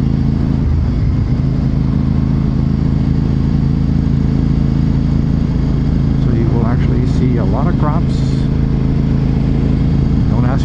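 Honda RC51's 1000 cc V-twin engine running at a steady cruise, without revving up or down, heard from a helmet-mounted camera.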